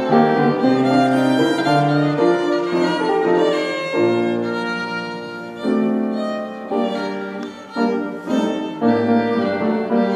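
A child's violin playing a flowing melody, accompanied by piano, with short breaks between phrases.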